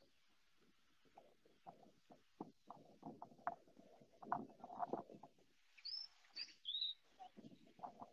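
Faint, irregular crackling and rustling, then a few short high bird chirps about six to seven seconds in.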